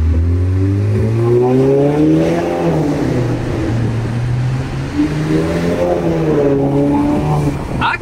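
Audi A4's turbocharged four-cylinder engine pulling hard with its multitronic gearbox in manual mode, heard from inside the cabin. The engine note climbs, falls back about two and a half seconds in, then climbs and falls once more near the end.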